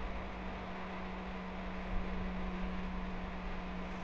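Steady background hiss with a low, steady hum underneath: the noise floor of a voice-over recording in a pause between spoken lines.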